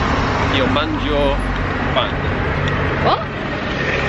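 Outdoor street noise: a steady low rumble of road traffic, with faint voices in the background.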